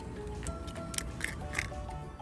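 Background music: a simple melody of held notes.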